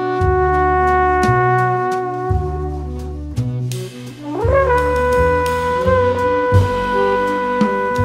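Slow jazz waltz played by trombone, alto saxophone, double bass and drums: a long held wind note fades out about halfway, and a new one slides up into place and is held, over a walking double-bass line that changes note about once a second and light, regular cymbal strokes.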